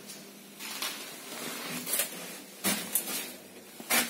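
Scattered short clicks and knocks in a quiet KMZ passenger lift cab, with the loudest click near the end.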